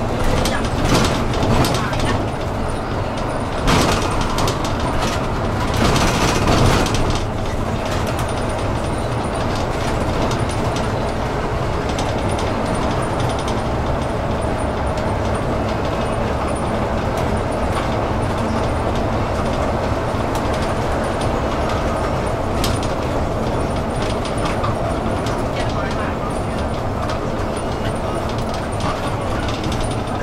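City bus interior while driving: steady engine and road noise, with louder rattling bursts in the first several seconds.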